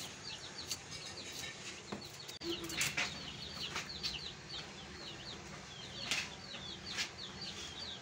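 Chicks peeping over and over in short, high, falling notes, with a few faint sharp clicks among them.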